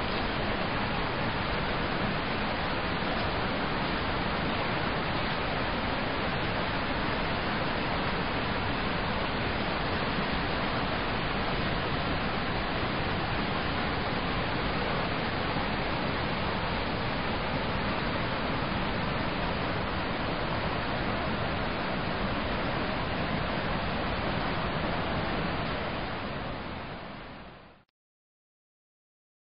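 Ten Mile River rushing over its rocky riffles in a steady, even wash of water noise that fades out in the last couple of seconds.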